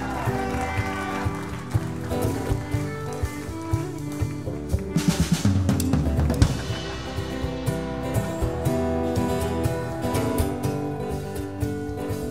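Small live band of fiddle, acoustic guitar, electric bass and drum kit vamping on a groove, with the drums to the fore: snare, kick and rimshot hits, thickening into a busy fill about five seconds in.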